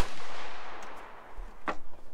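Gunshots at an outdoor shooting range: a sharp shot right at the start, then a fainter shot near the end.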